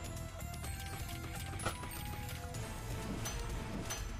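Online video slot's game audio during free spins: music with a run of clicks and short chimes as the reels spin and land.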